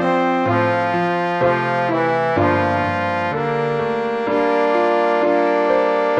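MIDI rendering of a mixed-chorus tenor part for note-learning: a synthesized brass-like tone moves from held note to held note over other sustained chord parts.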